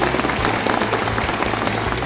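An audience applauding: a dense patter of many hands clapping at once, over a low background music bed.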